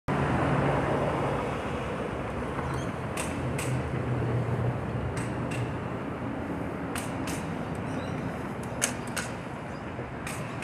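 Bicycle rolling along a paved bridge deck: steady wind and tyre-rolling noise with a low hum, and about four pairs of short sharp clicks, each pair about a third of a second apart.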